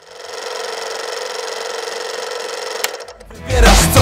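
A steady mechanical whirring sound effect fades in and runs for about three seconds, then stops with a click. Near the end a hip-hop beat with heavy bass comes in.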